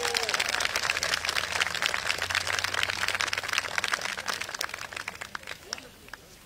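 Audience applauding, the clapping gradually dying away toward the end.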